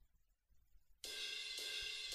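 Near silence, then about a second in a faint cymbal starts ringing steadily, a soft shimmering wash.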